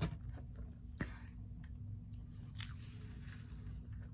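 A person chewing a mouthful of pancakes, with a few short sharp clicks, the loudest about a second in, over a low steady hum.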